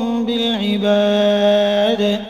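A reciter chanting the Quran in Arabic in the melodic recitation style, holding long sustained notes; the pitch steps down about half a second in, and the voice stops near the end as the verse closes.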